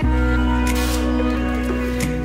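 Background music: long held chords over a deep bass note that comes in at the start, with a brief hissing swell twice.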